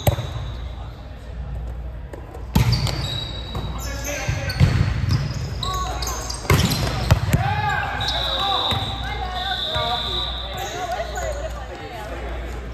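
Volleyball rally on an indoor court: a handful of sharp smacks of the ball being hit and played, short high squeaks, and players' voices shouting in the second half.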